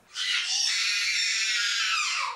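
A shrill, raspy cry held for about two seconds, sliding down in pitch at the end.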